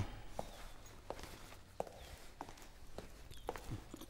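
Faint footsteps at a slow, even walking pace, about one step every two-thirds of a second.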